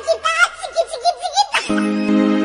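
High-pitched, warbling laughter in short rapid pulses; near the end it stops and music with steady held chords begins.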